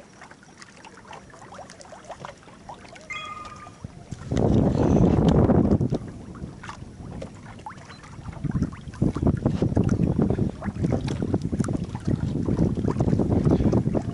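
Gusty wind buffeting the microphone on an open boat. It comes in loud gusts about four seconds in, and again from about eight and a half seconds on. A brief high tone sounds about three seconds in.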